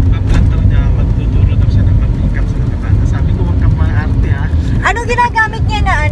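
Steady low rumble of a moving car, heard from inside the cabin, with talk over it and a voice coming up clearly near the end.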